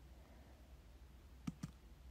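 Near silence with two faint clicks in quick succession about one and a half seconds in.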